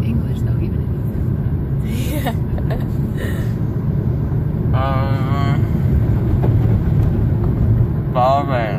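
Steady low road and engine rumble heard from inside a moving car's cabin. A short voice sound about five seconds in.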